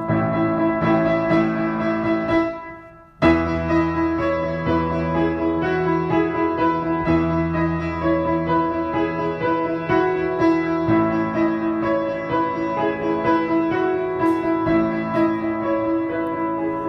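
Background music led by piano: one piece fades out about two to three seconds in, and a new piano piece with a bass line starts suddenly just after, playing on steadily.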